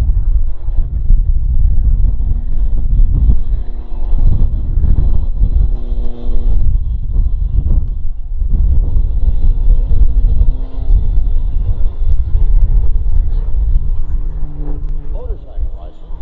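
Heavy wind buffeting on the microphone, a loud low rumble, over the engine and propeller of an Extra 330SC aerobatic plane. The engine's drone holds one pitch for a second or two at a time, then shifts as the plane works through its manoeuvres.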